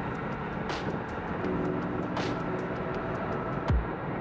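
The four turbofan engines of a Tupolev Tu-160 bomber at full power during its takeoff run and lift-off, a steady low rumble. Background music with sustained chords and a light, even tick plays over it.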